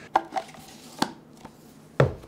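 A few short, sharp clicks and taps from a cardboard pen box being handled and pulled open, with a louder knock at the very end.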